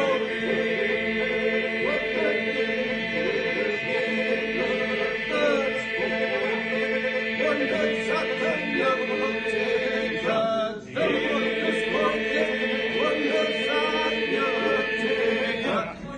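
A group of men singing Albanian Lab iso-polyphony: several voices hold a steady drone while a lead voice moves above it. The singing breaks off briefly about eleven seconds in, then resumes and stops just before the end.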